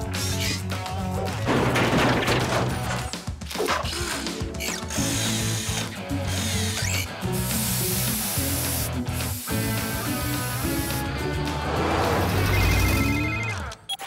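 Cartoon background music with a steady bass line, over which a paint sprayer hisses as it marks white lines on the road. Near the end there is a short run of electronic beeps.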